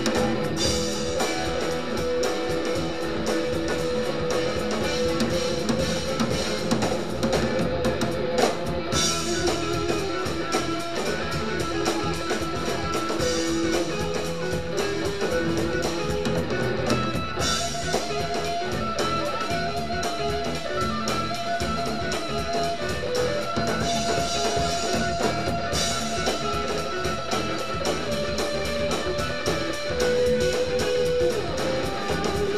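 Live rock band playing: an electric guitar plays a lead of long held notes over drum kit and bass guitar.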